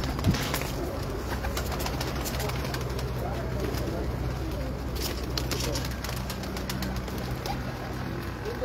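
Domestic high-flyer pigeons cooing in a wire loft, a low steady sound, with a few light clicks.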